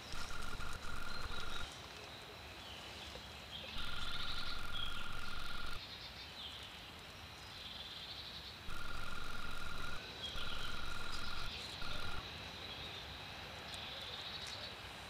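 An animal's trill, held at one even pitch and sounding in repeated bursts, the longest about two seconds. Fainter high chirps and a steady high whine run behind it.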